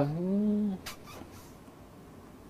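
A man's drawn-out hesitation vowel, 'éé...', rising in pitch and trailing off within the first second, followed by a faint click and quiet room tone.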